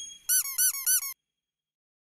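Logo-animation sound effect: three quick high chirps in a row, each rising and then falling in pitch, ending about a second in.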